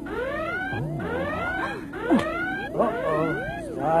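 Star Trek-style transporter beam sound effect: a warbling electronic shimmer of swooping tones that rise and fall about twice a second over a steady hum. There is a sharp click about two seconds in.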